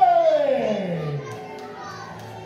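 A person's voice letting out a long shouted 'whoa' that falls steeply in pitch over about a second, then trails off.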